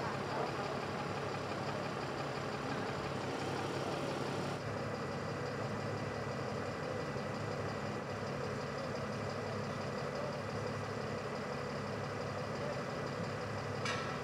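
A tow truck's engine idling steadily, with the sound shifting slightly about four and a half seconds in.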